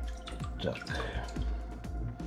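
Water dripping and plinking into a sink of water as a freshly opened cockle is lifted out and handled: a string of small irregular drips.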